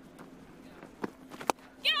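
Cricket bat striking the ball: a sharp crack about one and a half seconds in, after a fainter knock about half a second earlier.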